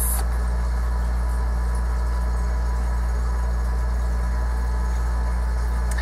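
Window air conditioner running: a steady low hum that does not change.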